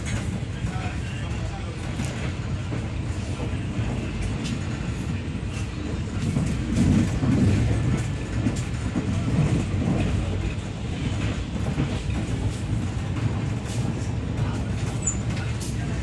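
Running rumble of a passenger train heard from inside the coach, with the wheels clicking faintly over rail joints. The rumble swells about six seconds in and eases again a few seconds later.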